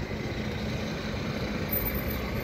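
Steady street traffic noise, with a motor vehicle engine running.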